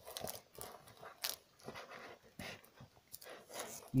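Quiet handling noise as a tablet is lifted out of its box: scattered small clicks and soft rustles of the device and its packaging.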